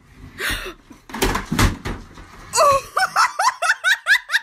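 A flat-screen TV toppling off a wooden dresser and crashing onto the floor about a second in. It is followed by a person laughing in quick, high, rising bursts.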